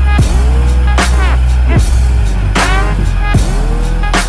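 Electronic dance music with heavy bass: sweeping, falling synth effects repeat in a regular pattern a little faster than once a second.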